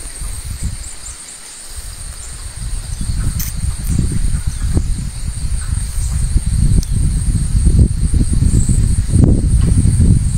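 Steady, high-pitched drone of insects in the forest. From about three seconds in, a louder low rumbling noise builds beneath it.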